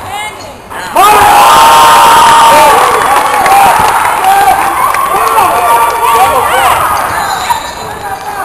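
Indoor basketball game sounds: players and spectators shouting and calling, with the ball bouncing and sneakers squeaking on the hardwood floor. The sound jumps up about a second in and is loudest for the next two seconds or so.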